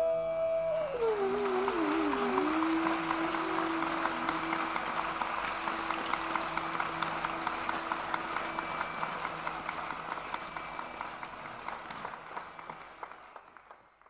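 Bansuri (bamboo flute) closing the raga: a held note glides down and settles on a low note for a few seconds. Audience applause follows and fades out near the end.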